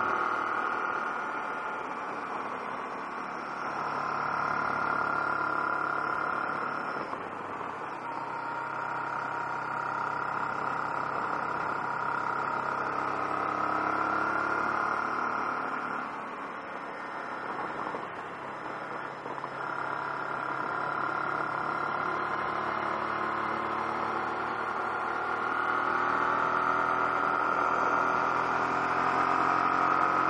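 Honda NT700V's V-twin engine running at road speed, its note rising and falling as the throttle opens and closes through the curves, with several brief dips.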